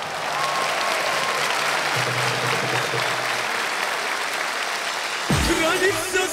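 Studio audience applauding between songs. The band comes back in with a beat about five seconds in as the next song starts.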